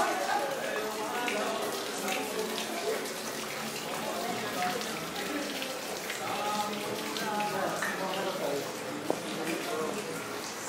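Indistinct chatter of several visitors talking at once, with no single clear voice, and a single sharp tap just after nine seconds.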